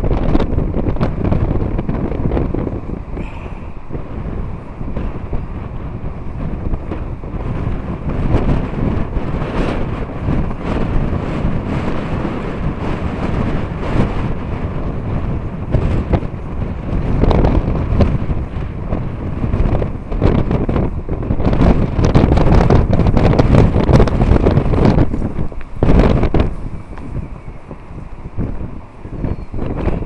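Wind buffeting the camera microphone in gusts, a loud low rumbling rush that swells past the middle and drops away briefly near the end.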